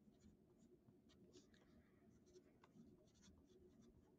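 Very faint pencil writing on paper: short, irregular strokes of the point across the page.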